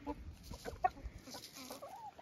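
Domestic chickens clucking softly: scattered short calls, with one brief louder cluck a little under a second in.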